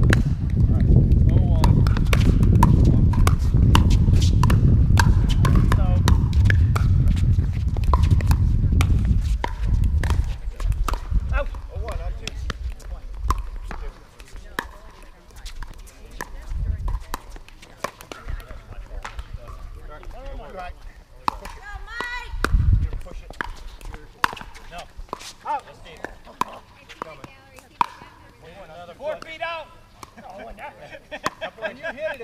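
Pickleball paddles striking a plastic ball during doubles play: sharp pops, many in the first ten seconds and fewer later. A heavy low rumble runs under the first ten seconds and fades out, and voices call out faintly now and then.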